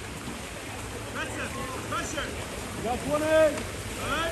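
Steady splashing and churning of water from players swimming in a pool, with scattered shouted calls; the loudest shout comes a little after three seconds in.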